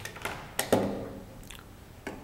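Light clicks and taps from handling small microscope parts, with a short voiced "uh"-like hesitation from a man under a second in.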